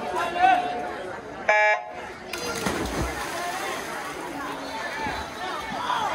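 Electronic starting beep of a swim-meet start system: one short, loud buzz about a second and a half in, the signal for the race to start. After it comes a broad wash of noise with voices from the crowd as the swimmers go into the water.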